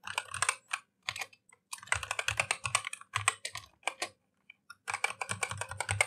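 Typing on a computer keyboard: quick runs of keystrokes broken by short pauses, with a longer pause a little past the middle.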